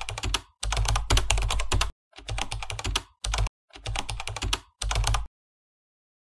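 Keyboard typing sound effect: quick runs of key clicks in about six short bursts with brief gaps, stopping near the end.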